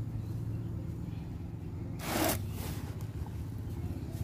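Hands stirring a loose potting mix of chopped coconut husk and soil in a plastic tub, with one louder rustling scrape about two seconds in. A steady low hum runs underneath.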